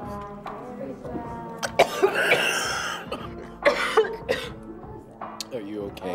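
A man coughing and gagging on something foul-tasting: a long harsh cough about two seconds in, then a shorter one a second and a half later. Background music plays under it.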